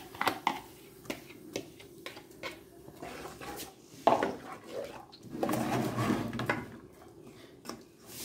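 A wooden spoon knocking and scraping against an aluminium pot while chopped onion, tomato and green pepper are stirred, with scattered light clicks and one louder knock about four seconds in.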